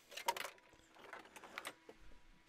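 A few short, faint clicks and taps, the loudest cluster just after the start and a few weaker ones later.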